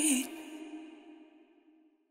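The final sung note of a pop song dips in pitch about a quarter second in. Then the voice and its echo tail fade away, leaving silence from about three-quarters of the way through.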